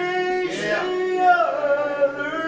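Gospel hymn singing, the voices holding drawn-out notes that slide in pitch, with light instrumental accompaniment.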